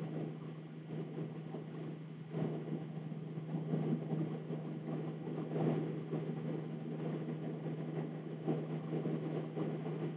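Pen writing on a paper worksheet, scratching and rubbing irregularly, louder from about two seconds in, over a steady low hum.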